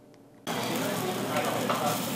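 A steady sizzle sets in suddenly about half a second in, after a short near-silence: steak searing on a hot infrared teppanyaki griddle plate.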